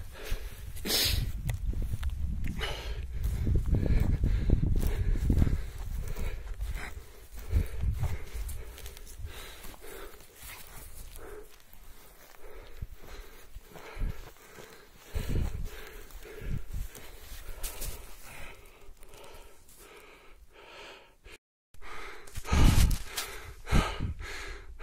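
Footsteps on dry grass and heavy breathing of someone hurrying after a dog, with rumble from the handheld microphone being jostled, strongest in the first few seconds. The sound cuts out briefly near the end, then a few loud breaths follow.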